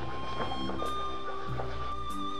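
Background music: long held high notes over a low bass line that changes note about halfway through.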